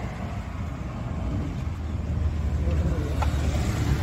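Road traffic going by: a low, steady noise that grows louder about halfway through as a vehicle passes close.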